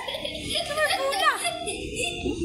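Young children's voices in play: a few short high-pitched squeals and exclamations over a background of other children's chatter.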